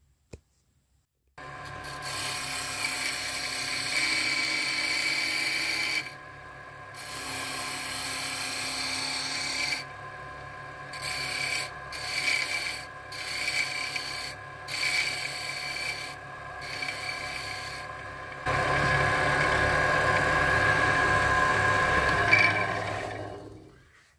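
A wood lathe starts up about a second in and runs with a steady whine while a hand-held turning chisel cuts a spinning wooden pen blank down toward its final diameter, making scraping, rasping cutting sounds that come and go in short bursts through the middle. The cutting is louder and continuous for the last few seconds, then the lathe stops just before the end.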